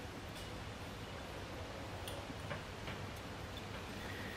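Quiet kitchen room tone with a steady low hum and a few faint, irregular ticks.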